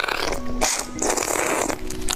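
Loud, noisy slurping of a drink through a straw, in two or three long pulls.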